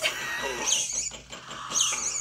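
Squeaky cartoon chirps from an animated film's soundtrack: two short, high squeaks about a second apart over soft background sound.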